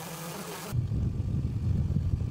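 Small quadcopter drone's rotors buzzing as it hovers. About two-thirds of a second in, the sound changes abruptly to a denser low rumble.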